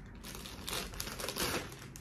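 A clear zip-top plastic bag crinkling in short, irregular rustles as it is handled and a pacifier is pulled out of it.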